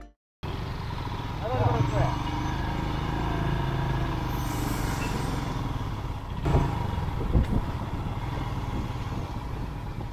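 Royal Enfield Himalayan motorcycle being ridden on the road, heard from the rider's seat: engine running with steady wind and road noise. There are two short knocks about six and a half and seven and a half seconds in.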